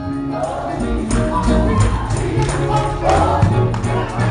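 Live southern gospel music: singing voices over a band with drum kit, cymbals and bass guitar.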